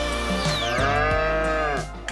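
Dairy cow mooing once, a long call that slides down in pitch at its start and then holds, over background music.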